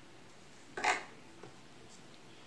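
A kitchen knife cutting a small pepper on a plastic cutting board: one short scrape about a second in, otherwise quiet.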